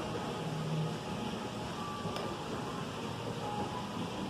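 Steady room noise of a restaurant dining room, a ventilation-like hum with faint voices in the background and a light click about two seconds in.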